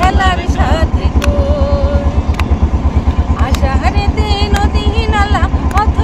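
A woman singing, with hand claps keeping time about once a second, over the steady fast chugging of the boat's engine, which is the loudest sound throughout.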